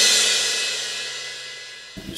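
Background music sting: a cymbal wash that fades away steadily over about two seconds.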